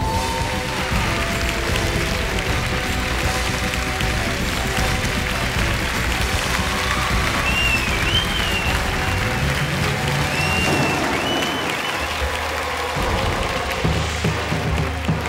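Audience applause over slow instrumental backing music, with a few high, wavering whistles about halfway through; the applause thins out near the end while the music carries on.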